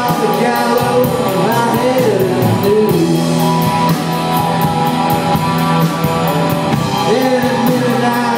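Live rock band playing: electric guitars over a drum kit keeping a steady cymbal beat, with a wavering melody line on top.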